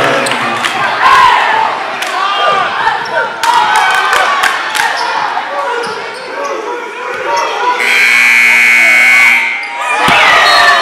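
Gym crowd talking and shouting, with a basketball bouncing on the hardwood in the middle. Near the end the scoreboard buzzer sounds once, a steady tone held for about a second and a half.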